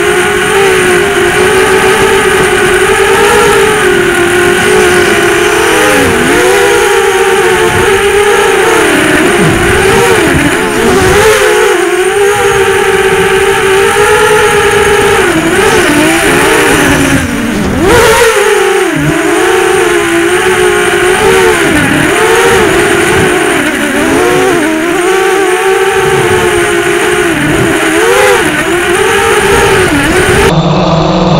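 Brushless motors and 6040 propellers of a 250-class FPV racing quadcopter (SunnySky 2204 2200kV motors), heard from on board, whining steadily with the pitch rising and falling as the throttle changes. About two-thirds through the pitch drops sharply, then climbs back.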